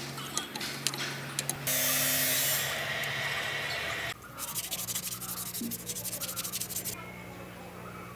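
Rusty bolt being worked out of a forklift axle bracket with an adjustable wrench: a few clicks, then a loud rasping scrape for about two seconds, then fast, even scraping strokes that stop near the end. A steady low hum runs underneath.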